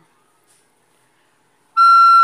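Soprano recorder sounding a single steady high E, the back thumb hole half covered. The note begins near the end, after a short silence.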